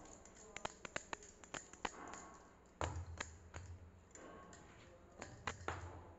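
Hands working a ball of dough, with glass bangles clicking together in quick irregular ticks, and a few soft thuds as the dough is pressed down onto a stone countertop about three seconds in and near the end.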